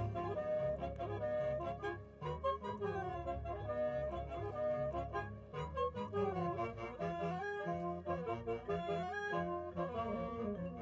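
High school marching band playing a busy passage: woodwind and brass lines moving quickly from note to note over low bass notes, with drum hits throughout.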